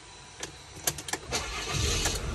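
Fiat Ducato van's diesel engine being started from the cab: a few clicks in the first second, then the starter cranks and the engine fires up, the rumble growing louder toward the end.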